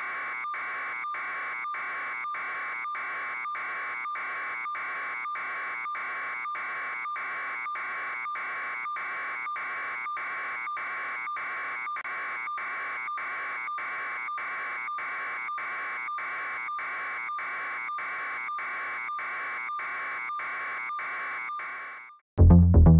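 A buzzing electronic tone pulsing evenly about twice a second at a steady level, like an alarm or a sound-design pulse.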